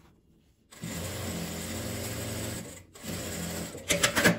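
Sewing machine stitching a zipper seam: it starts up a little under a second in, runs steadily for about two seconds, stops briefly, then runs again more quietly until just before the end.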